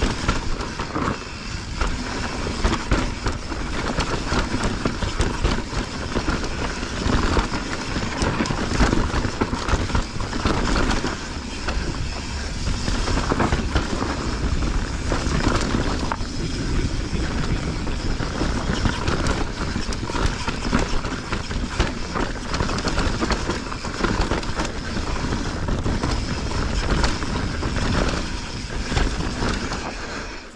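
Mountain bike rolling fast down a dry, rocky dirt trail: tyre noise over dirt and stones, with steady rattling from the bike, and wind buffeting the chest-mounted camera's microphone.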